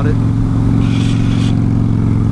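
Harley-Davidson Softail Springer Crossbones' air-cooled V-twin running at a steady cruising speed, one even, unchanging engine note, with a brief hiss about a second in.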